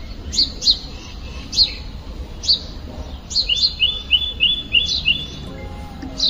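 Small birds chirping: short high chirps at irregular intervals, with a quick run of about six notes around the middle, over a steady low rumble.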